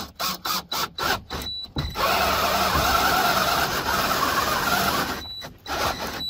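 A drill boring a 1-1/2 inch hole in a 2x4 with a Forstner bit. It starts with a quick series of short bursts, and about two seconds in it settles into steady cutting for about three seconds before stopping near the end.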